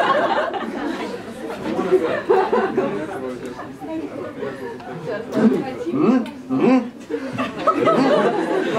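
A small group of people chattering and laughing, several voices overlapping.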